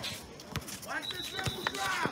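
Basketball dribbled on an outdoor sport court: two separate bounces about a second apart.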